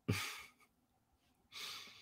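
A man breathing out audibly into a close microphone, like a sigh, fading within half a second, then a second, shorter breath about a second and a half in.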